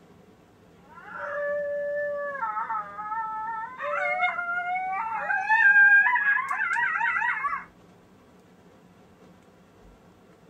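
Recorded coyote howls and yips played through the Lucky Duck Super Revolt electronic predator caller's speaker. A couple of held howl notes begin about a second in, then rising and falling howls, ending in quavering yips that stop suddenly after about six and a half seconds.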